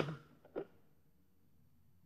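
A man's voice breaking off in the first half-second, a short faint vocal sound just after, then near silence.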